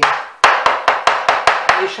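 Kitchen knife slicing button mushrooms on a wooden cutting board: a quick, even run of about seven sharp knife strikes on the board, roughly five a second.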